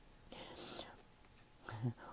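A faint breathy, whisper-like sound from the reader's voice about half a second in, then a brief low voiced sound near the end.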